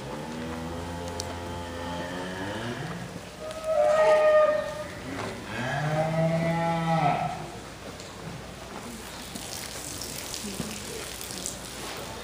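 Cattle mooing: three long moos one after another in the first seven or so seconds. The first is low and drawn out, the second is higher and the loudest, and the third is deep. After them only the low noise of the hall remains.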